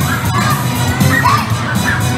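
A crowd of children shouting and cheering excitedly, with many high calls rising and falling over one another.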